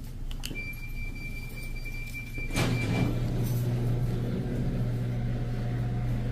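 A steady electronic beep for about two and a half seconds, cut off by a sharp clunk, after which a steady low hum carries on.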